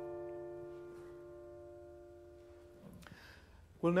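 A chord on a grand piano, held and slowly dying away, released after about three seconds. A man starts speaking near the end.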